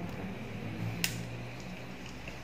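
Quiet room tone with a faint steady low hum, broken by one sharp click about a second in.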